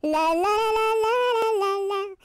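A woman's voice singing a wordless melody in one phrase of about two seconds, the notes stepping up and then back down.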